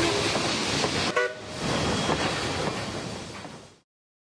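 Train rumbling by with a brief horn toot about a second in, the rumble fading out to silence near the end.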